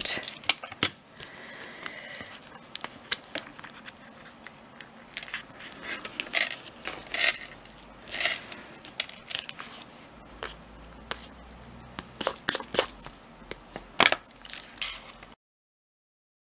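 Craft knife blade scraping and clicking through thick board on a cutting mat, with the rustle and taps of the board being handled and pressed. The sounds come as many short scratches and clicks, and the audio cuts off abruptly near the end.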